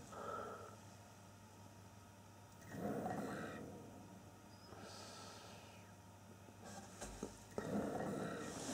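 Quiet, with three faint breathy swells of noise about two seconds apart, like a person breathing out close to the microphone.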